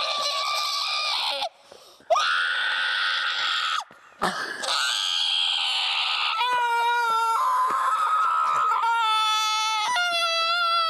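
A person screaming in long, high-pitched held screams, broken by two brief pauses.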